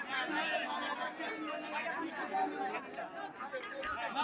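Faint background chatter of a crowd, many voices talking at once with no single voice standing out.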